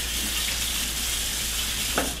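Kitchen tap running steadily into a sink, cut off right at the end.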